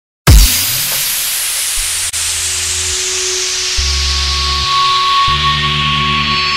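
Electronic music intro: a heavy hit at the very start, then a hiss of noise sweeping slowly downward over deep bass notes that change every second or so, with a steady high note coming in about four seconds in.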